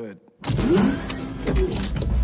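Motorized weapons display panel opening: a loud mechanical whir with a deep rumble that starts suddenly about half a second in.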